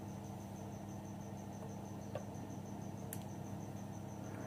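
Faint steady electrical hum with a high, thin chirp pulsing evenly about seven times a second, and a couple of light clicks.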